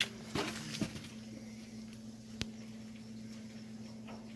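A few sharp clicks and knocks, as of small metal parts being handled, over a steady low hum; the crispest one comes about two and a half seconds in.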